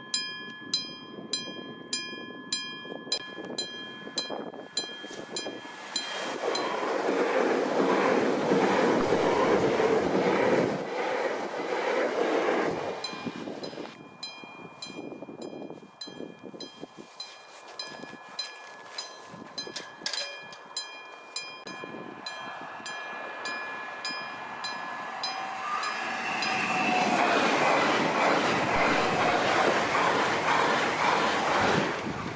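Level crossing warning bell ringing, about two strikes a second, twice drowned out by a loud rushing noise. Near the end a passenger train passes the crossing, its rushing noise carrying a rising whine.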